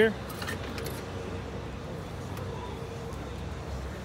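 Steady low background hum and hiss, with a few faint light clicks in the first half-second.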